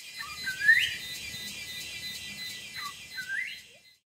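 A bird gives two rising calls about three seconds apart over a steady, high-pitched buzz. The sound cuts off suddenly just before the end.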